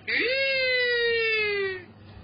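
A single long, high vocal wail: it rises sharply at the start, then slides slowly downward in pitch for about a second and a half before breaking off.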